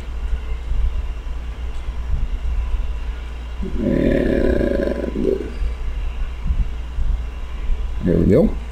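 A steady low hum runs throughout, with a short muffled murmur, like a voice, lasting about a second and a half near the middle.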